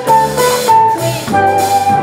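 Jazz quartet of flute, piano, bass and drums playing live, the flute carrying the melody. The flute plays a few short notes, then holds one long note from a little past halfway, over piano chords, walking bass notes and cymbals.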